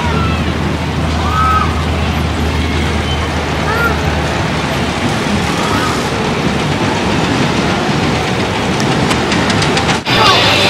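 Outdoor background noise: a steady rumble with a low engine-like hum through the first half and a few short, high, rising-and-falling cries in the distance.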